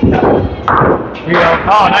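A candlepin bowling ball lands on the wooden lane with a sudden thud and rolls away. About a second and a half in, voices start up in the hall.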